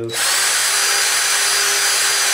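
DeWalt cordless drill running at a steady speed with a very small bit, opening up the tiny breather hole in a plastic hose-end sprayer cap. It starts just after the beginning and holds one even motor whine.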